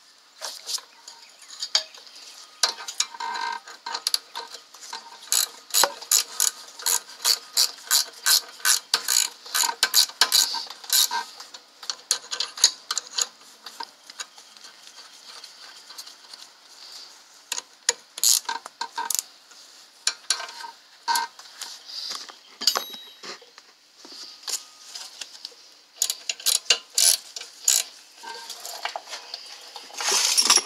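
Ratchet wrench clicking in runs of quick, evenly spaced strokes, about three a second, as the rear brake caliper bolts are run in, with pauses and handling noise between the runs.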